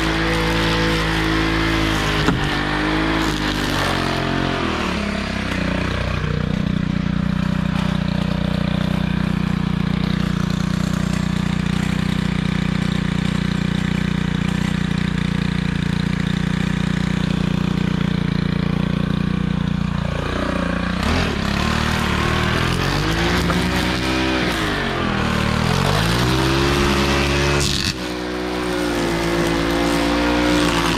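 String trimmer's small engine running under throttle, then dropping about five seconds in to a steady, lower-pitched idle. From about twenty seconds it is revved up and down repeatedly as the cutting resumes.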